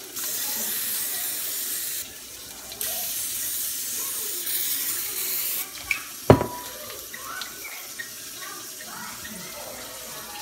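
Aerosol cooking spray hissing onto the plates of a mini waffle maker in two bursts, the first about two seconds long and the second about three. A sharp knock follows about six seconds in.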